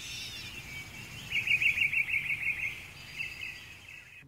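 Outdoor ambience with a small bird chirping: a rapid run of short, high chirps starting just over a second in and lasting over a second, with a few fainter calls around it, over a steady background hiss.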